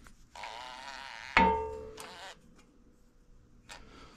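A sharp metal clank that keeps ringing with a fading tone for about two seconds, after about a second of scraping between metal parts.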